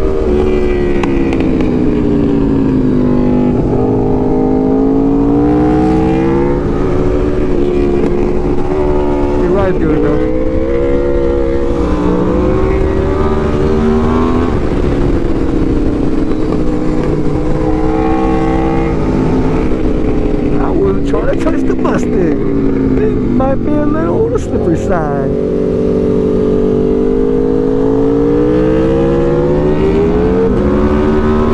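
Aprilia RSV4 Factory's V4 engine at road speed, its pitch rising and falling again and again as the throttle is rolled on and off through a run of curves, with wind noise over it.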